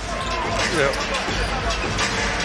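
Basketball being dribbled on a hardwood court over steady arena crowd noise, with a brief voice just under a second in.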